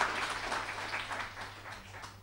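Audience applauding at the end of a talk, the clapping thinning and fading out near the end.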